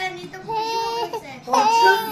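A baby vocalizing: two drawn-out, high-pitched sustained notes, the second one near the end louder and starting with a quick rise in pitch.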